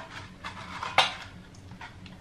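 Disposable aluminium foil baking cups being handled and pulled apart, giving a few light clicks and crinkles, the sharpest about a second in.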